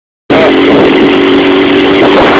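600cc sport motorcycle heard at riding speed from a phone inside the rider's helmet: a steady engine hum under loud wind rush, distorted and cut off above the phone's range. It starts abruptly about a quarter second in.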